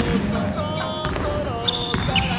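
A basketball bouncing on a wooden gym floor as it is dribbled, over background music with a melody.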